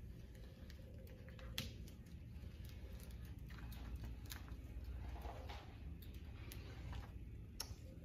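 Faint, sparse crackles and small clicks of paper backing being slowly peeled off a vinyl stencil, over a low steady hum.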